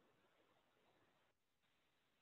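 Near silence: only a very faint, steady background hiss.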